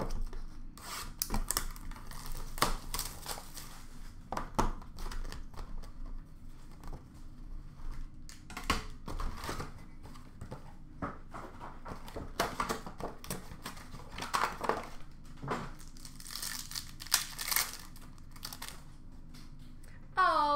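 Plastic wrapping crinkling and tearing as a sealed box of trading cards is opened, with the cardboard box and cards being handled. The sound is a run of irregular crackles and clicks.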